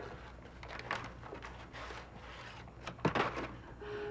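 Faint rustling and handling of crumpled paper taken from a wastebasket, with a sharp click about three seconds in.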